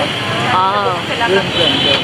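A voice talking over steady street traffic noise.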